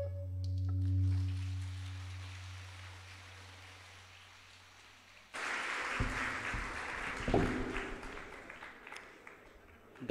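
A low lingering tone from the end of a violin and tabla piece fades out over about five seconds. Then audience applause breaks out suddenly and dies away near the end, with a couple of dull thumps in it.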